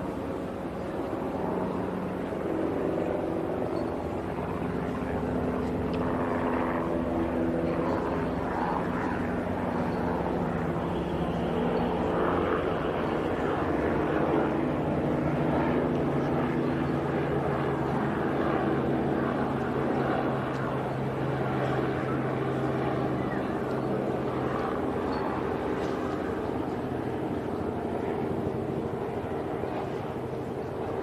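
An aircraft flying over: a steady engine drone with several pitched lines that shift slowly in pitch, loudest around the middle.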